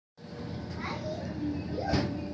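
Indistinct background chatter of voices in a dining room, with children's voices among it, and one sharp knock near the end.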